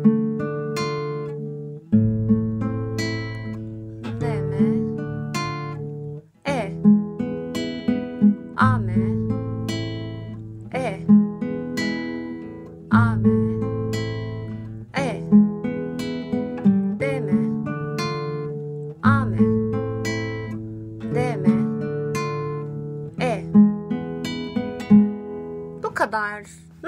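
Acoustic guitar fingerpicked slowly, one arpeggio per chord, changing chord about every two seconds through D minor, A minor and E major. Each arpeggio is a bass note followed by three higher strings, and the arpeggio is longer, running back down two strings, on the E chord that closes each line.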